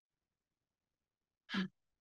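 Silence, then about a second and a half in, one short voiced breath from a woman, a brief sigh-like sound.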